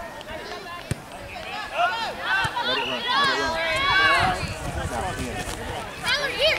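Several voices shouting and calling out at once during a soccer match, loudest in the middle of the stretch, with a single sharp knock about a second in.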